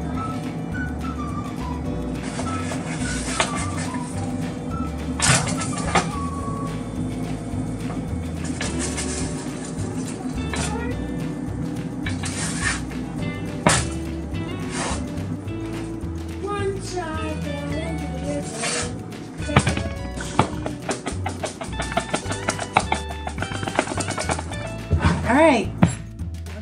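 Background music playing steadily.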